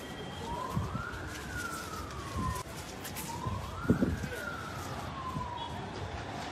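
A siren wailing in two slow rise-and-fall cycles, each climbing and then sliding back down over about three seconds. Low thumps sound now and then beneath it.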